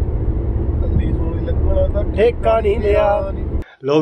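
Steady low road and engine rumble inside the cabin of a moving car, with voices talking over it; it cuts off abruptly about three and a half seconds in.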